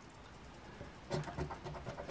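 A coin scratching the coating off a paper scratch-off lottery ticket in quick, short strokes, starting about a second in.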